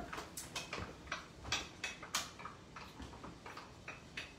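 A can of drained fire-roasted tomatoes being emptied into a pan of sausage: a run of irregular light metal clicks and taps, about a dozen, as the can and utensil knock against each other and the pan.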